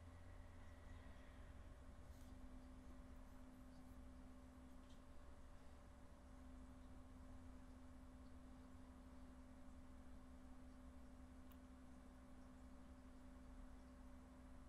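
Near silence: a faint, steady hum with a low rumble beneath it.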